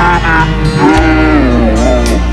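A man singing a slow, drawn-out vocal line into a microphone, his pitch sliding between held notes, over a backing track with steady sustained low notes.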